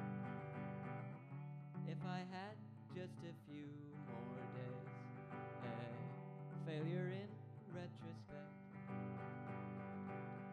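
Hollow-body electric guitar strummed and holding chords in a slow passage without words. A wavering, warbling pitched line rises over the chords twice, about two seconds in and again near seven seconds.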